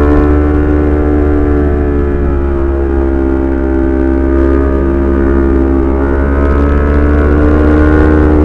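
Honda CBR250RR's parallel-twin engine running under steady throttle while riding, heard from the rider's seat; its note sags a little through the middle and climbs again near the end. A low rumble of wind on the microphone runs underneath.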